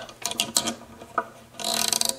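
Wooden tuning peg of an old violin being turned in its peg box as a string is wound on: a run of quick clicks and creaks, a single click a second in, then a short rustle near the end.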